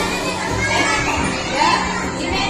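Hubbub of a crowd of children and women: many overlapping voices chattering and calling out at once, with faint music underneath.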